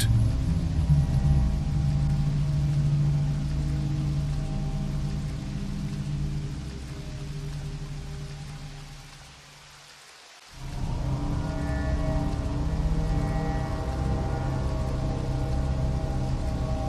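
Dark ambient background music of steady low drones over a rain soundscape. It fades down to a brief lull about ten seconds in, then a new droning track with rain starts abruptly.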